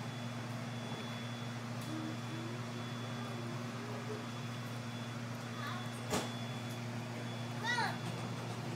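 Steady hum inside a moving light rail car, with a faint tone slowly rising and wavering a few seconds in. A sharp click comes about six seconds in, and a short burst of a voice near the end.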